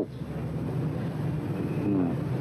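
A steady low hum with a hiss behind it.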